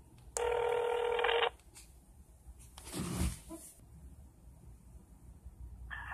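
A telephone ringing tone heard over a mobile phone's speaker as an outgoing call rings: one ring about a second long near the start. A soft low rustle follows about three seconds in.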